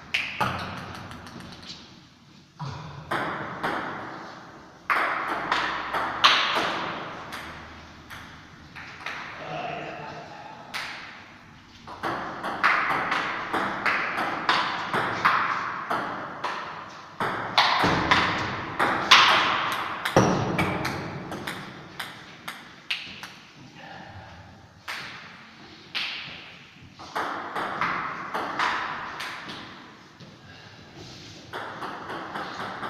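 Table tennis rallies: the ball clicking back and forth off the paddles and a Stiga table, each hit ringing on briefly in the hard-walled room. The rallies pause a few times between points.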